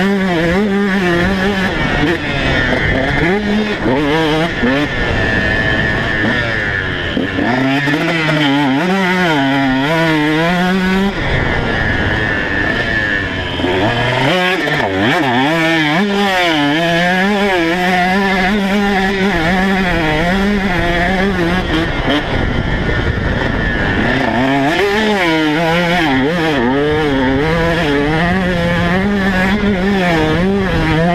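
KTM 150 SX two-stroke single-cylinder motocross engine heard from onboard under riding load, its pitch rising and falling again and again as the throttle is worked, with a few stretches held at a steady pitch.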